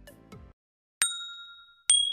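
Two short, bright ding chimes, the first about a second in and the second near the end, each ringing out and fading. They are the notification-style sound effects of an animated subscribe-and-bell end card.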